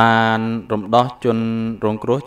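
A man's voice holding long, level-pitched syllables in a chant-like delivery, two drawn-out notes with a short break between.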